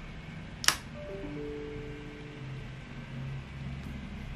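A sharp click as the Dual Moto electric scooter's button is pressed, followed by a short electronic power-on chime of a few overlapping steady tones lasting about a second and a half, then a low steady hum.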